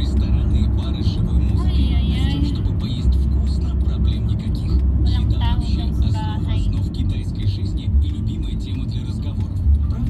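Steady low rumble of engine and road noise inside the cabin of a manual-transmission car driving in city traffic, with a voice heard over it at times.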